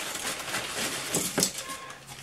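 Clear plastic bag rustling as it is handled and a small part is taken out, with a short sharp tap about one and a half seconds in.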